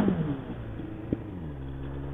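Motorcycle engine running under way, its revs dropping over about a second and then holding steady at a lower pitch, with a short click about a second in. The rider blames it on a troublesome second gear.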